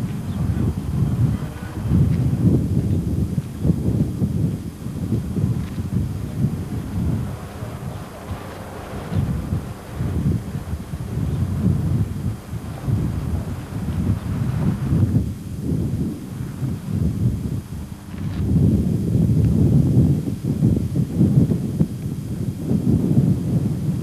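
Wind buffeting a camcorder microphone: a gusty low rumble that swells and fades irregularly. It is heaviest in the last few seconds.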